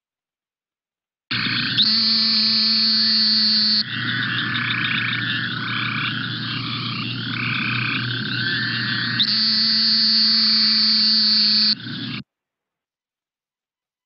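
Recorded calls of Great Plains narrowmouth toads: two long, high, nasal buzzes about two and a half seconds each, sounding like an angry insect, with a chorus of shorter calls between them. The recording starts about a second in and cuts off abruptly near the end.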